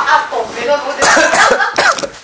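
People talking in a room, with short coughing bursts about a second in and again near the end.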